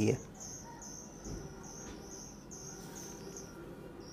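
A steady series of short, high-pitched chirps, a little over two a second, pausing shortly before the end, over faint low room hum.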